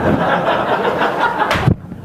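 Audience laughing together, a dense mix of many people's laughter in a large hall. It ends in a brief sharp sound about one and a half seconds in.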